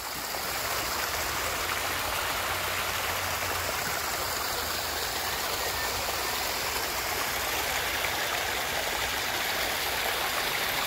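A steady, even rushing noise, like running water, that comes up just after the start and holds level.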